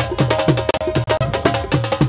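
Punjabi folk music on hand drums: a quick rhythm with about three deep strokes a second that each bend down in pitch, mixed with sharper high strokes over a held melodic note.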